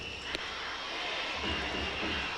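A baseball pitch, a slider at 127 km/h, pops once sharply into the catcher's mitt about a third of a second in. A steady stadium crowd din with a thin high tone runs underneath.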